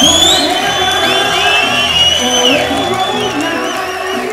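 Thrash metal band playing live, kicking in loudly at the start with a low held bass note and high gliding, held tones on top, over a cheering crowd.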